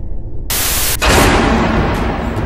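Static noise sound effect: a half-second burst of hissing white noise that cuts off sharply, followed at once by a louder noisy hit that fades away over about a second, over a steady low rumble.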